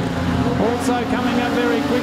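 Street stock sedan engines running steadily as the cars circle a dirt speedway, with a race commentator talking over them.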